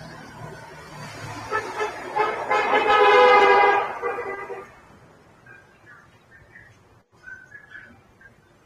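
A long, loud horn-like toot that swells up about two seconds in and fades out about two seconds later.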